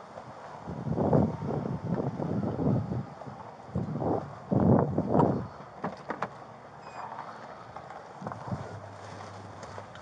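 Footsteps and clothing rubbing against a body-worn camera as the wearer walks, then a few sharp clicks about six seconds in as a patrol car door is opened and he climbs into the seat. A low steady hum comes in near the end.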